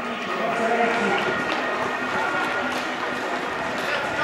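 Street crowd chatter, many voices at once, with running footsteps on pavement mixed in.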